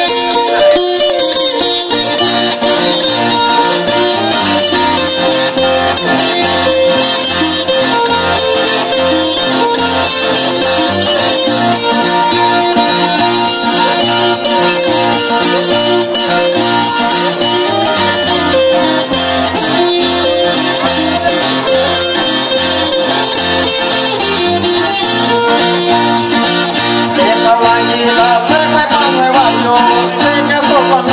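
Colombian carranga played on strummed and picked tiples and a guitar: a lively instrumental passage with a melody line over a bass that alternates between two notes in an even beat.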